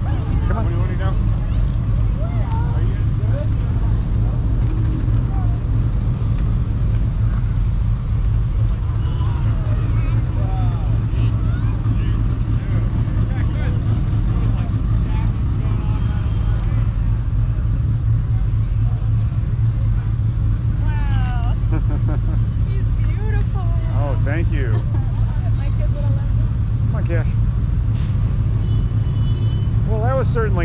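Faint distant voices talking now and then over a steady low rumble, with more talk in the last third.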